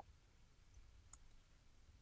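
Near silence with two faint clicks about a second apart, from a computer keyboard and mouse.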